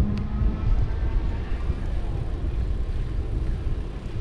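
Wind buffeting the microphone and tyre rumble from a bicycle riding along a paved path, a steady low rumble throughout, with a brief hum near the start.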